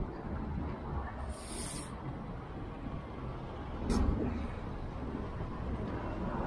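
Low rumble of a moving fat bike's tyres on the pavement and wind on the handlebar-mounted camera, with a brief high hiss about a second and a half in and a knock about four seconds in.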